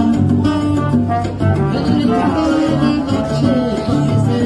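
Small live band playing an upbeat Latin-style tune, with guitar over a repeating bass line.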